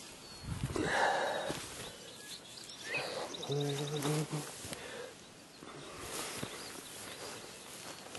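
Rustling and brushing through grass, with handling knocks, as a compound bow is picked up. About halfway through comes a short low pitched sound of a few pulses, like a man's hum or grunt.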